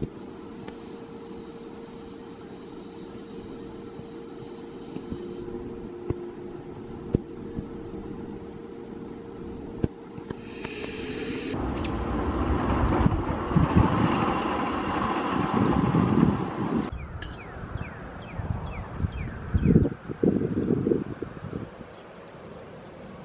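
Arrow Dynamics steel roller coaster train running along its track. It is a rumble that builds to a loud peak about two-thirds of the way in and cuts off, followed by shorter rattles near the end. Before that a steady hum carries on quietly.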